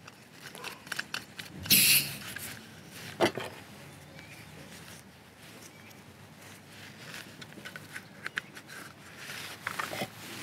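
Handling noises of a canister camping stove being put together: a short burst of rustling about two seconds in, a sharp click a little after three seconds, then soft clicks and taps as the plastic canister stand is fitted and the pot is set on the burner.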